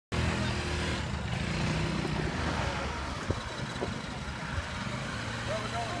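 Suzuki Jimny's engine running low as the small 4x4 drives slowly past, loudest in the first second, with quad bike engines idling around it.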